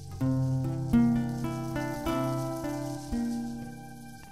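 Slow instrumental passage led by acoustic guitar: plucked notes and chords struck about once a second, each ringing and fading, over low bass notes, dying away near the end.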